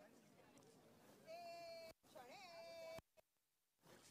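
Two faint, drawn-out vocal calls, each held on one pitch for about half a second, a little over a second in and again about two seconds in.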